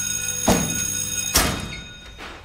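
Electric school bell ringing steadily, cutting off abruptly about a second and a half in, with two loud thumps, one about half a second in and one as the bell stops.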